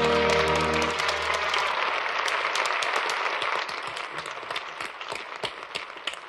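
An orchestra holds its final chord, which ends about a second in, and a concert audience breaks into applause that slowly thins out.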